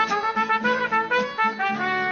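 Mariachi band playing: a trumpet carrying a lively melody of short, changing notes over a steady strummed guitar rhythm.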